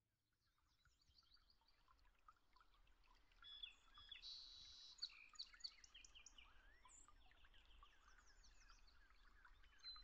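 Faint chorus of many small birds chirping and trilling, fading in over the first few seconds.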